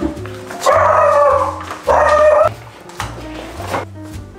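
A pet calling loudly twice: a long call of about a second, then a shorter one, over background music.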